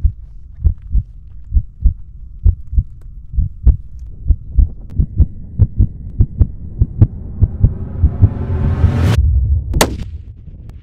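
Heartbeat sound effect: low paired lub-dub thumps that quicken, building under a rising swell and ending in a sharp crack near the end.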